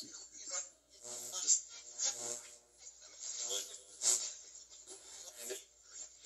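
Ghost box app playing through a small speaker: a chopped stream of brief voice-like fragments and hiss, a new snippet every half second to a second.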